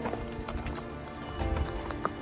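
A horse's hooves clip-clopping on a dirt trail as it is led at a walk: a few uneven hoof strikes, over background music.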